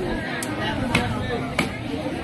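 A heavy cleaver-like knife chopping through fish onto a wooden log chopping block: three sharp chops in under two seconds.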